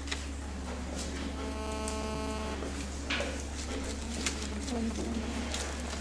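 A quiet pause in a hall: a steady low electrical hum, faint distant voices, and a short buzzing tone about two seconds in.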